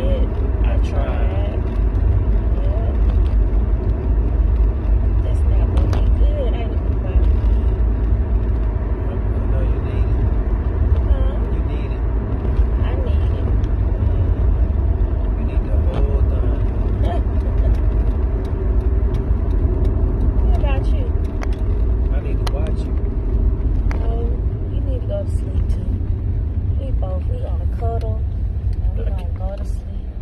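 Steady low road and engine rumble of a car in motion, heard inside the cabin, with faint voices under it.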